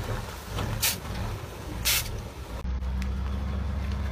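Loaded three-axle truck crawling downhill: low engine rumble with two short, sharp hisses about a second apart, typical of air-brake bursts. Past the halfway point the sound changes abruptly to a steadier low engine drone.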